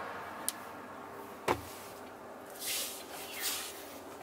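Upholstered bench cushions being pulled off and moved by hand: a small click, then a soft thump about a second and a half in, followed by two brief swishes of fabric.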